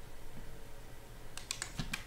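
Computer mouse clicking as on-screen sliders are dragged: a quick cluster of about four sharp clicks in the second half, over a faint low room hum.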